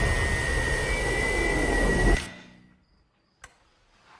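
Television static: a loud, even hiss with a steady high whine running through it, cut off about two seconds in and dying away to near silence, followed by a single faint click near the end.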